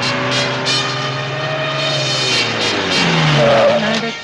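A jeep's engine running hard, with crashing and clattering as it smashes through a roadside hoarding. The engine note drops in pitch about three seconds in.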